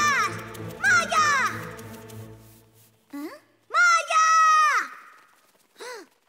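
A child-like cartoon voice calling out several times, the longest call drawn out for about a second near the end, over soft background music that fades out about halfway through.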